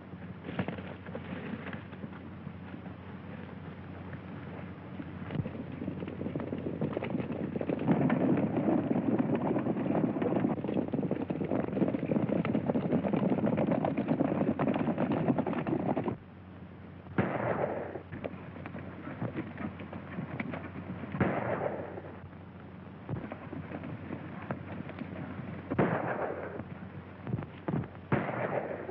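Horses galloping, growing louder, then cutting off abruptly about two-thirds of the way in. Three sharp gunshots follow, a few seconds apart, each with a short ring after it, over the steady low hum of an old optical film soundtrack.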